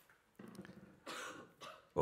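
A person clearing their throat, ending in a short cough and a smaller second one.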